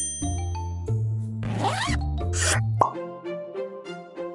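Cartoon sound effects over background music: a bright high ding right at the start as the idea light bulb appears, then two short whooshes and a sharp pop a little under three seconds in, after which the music's bass drops away.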